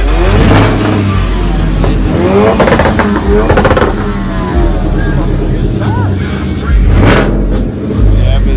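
Car engine revved hard several times, the pitch climbing with each rev and falling back between, with voices in the background.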